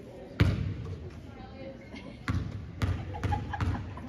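A basketball bounced on a hardwood gym floor several times: one loud bounce about half a second in, then a quicker run of four bounces near the end, typical of a shooter dribbling before a free throw. The bounces ring on in the gym's echo under low voices.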